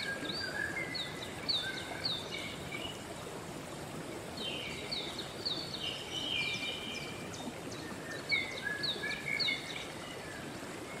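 A stream running steadily, with a songbird singing short repeated phrases in three bouts: at the start, around the middle and near the end.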